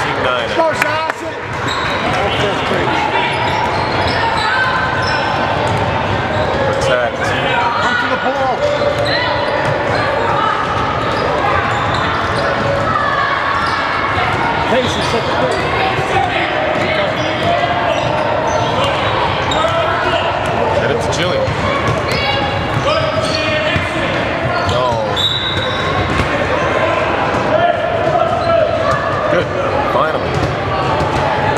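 A basketball bouncing on a gym floor during a game, with indistinct voices of spectators and players going on throughout in the echoing hall.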